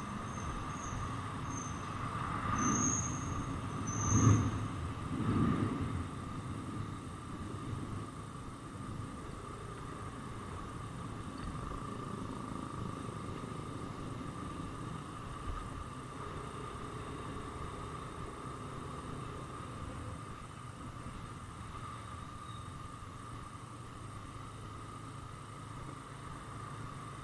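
Motorcycle riding in slow city traffic: steady engine and road noise, with three louder swells a few seconds in.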